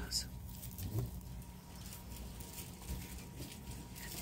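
Indoor shop background: a steady low hum with faint voices, a short high rustle just after the start and a soft knock about a second in, typical of handling merchandise while filming.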